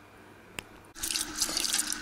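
A single click about half a second in. From about a second in, water runs and splashes as a clogged aquarium filter sponge is rinsed and squeezed by hand in a basin.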